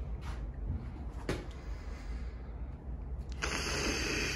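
Cordless drill driving screws into a plywood wall sheet: a couple of faint clicks, then a short run of the drill near the end.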